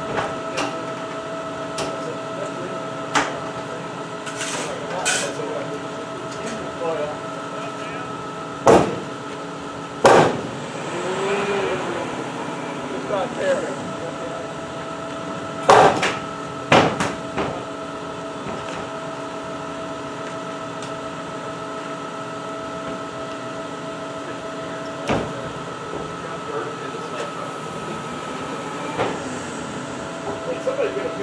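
A hammer striking the aircraft structure inside the fuselage, about six sharp blows spaced several seconds apart, knocking the parts as the crew lines up the bolt holes between wing box and fuselage. A steady mechanical hum with a whine runs underneath.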